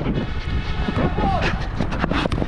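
Footballers shouting during play over a steady low wind rumble on the microphone of a body-worn action camera.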